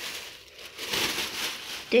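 Rustling and crinkling of a plastic shopping bag and the clothes in it as they are handled and rummaged through, swelling for about a second in the middle.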